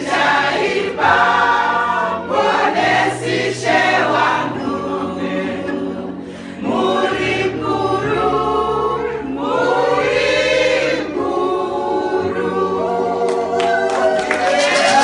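A choir of women singing a worship song together in church.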